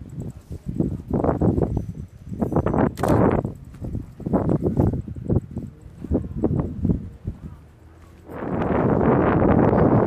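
People's voices in short bursts of talk. Near the end, a loud, steady rushing noise sets in.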